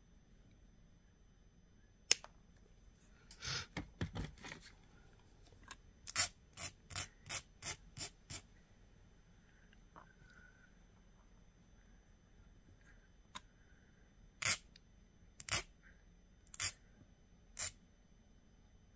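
Small wire cutters snip once through the loop of a brass stamping about two seconds in. Short scraping strokes of a metal file on the cut metal follow: a quick run of about three strokes a second a few seconds later, then single strokes about a second apart near the end.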